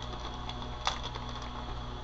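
A few faint clicks and crinkles of a small plastic wax-melt clamshell being handled, the clearest about a second in, over a steady low electrical hum.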